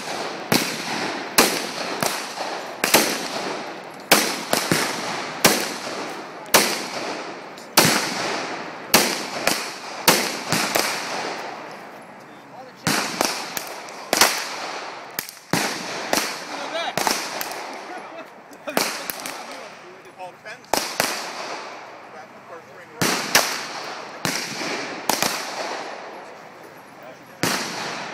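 Handgun shots, dozens of sharp cracks at irregular intervals of roughly one to two a second, some in quick pairs, each followed by a short echo.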